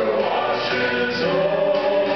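Male southern gospel vocal group singing in close harmony through microphones, holding long chords.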